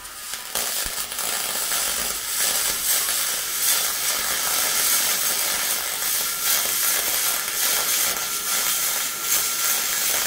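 Millermatic 211 MIG welder arc on aluminum: the steady crackling hiss of a continuous bead, starting about half a second in.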